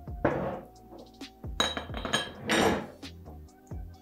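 A metal spoon and a glass flour jar clinking: a few sharp clinks, some with a brief ring, as flour is spooned into a stainless steel mixing bowl and the jar's glass lid is put back on.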